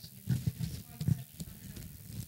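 Irregular low bumps and rubs of a handheld microphone being moved, with faint voices away from the microphone.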